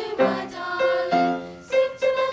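Small children's choir of about twelve voices singing, holding each note briefly before moving to the next.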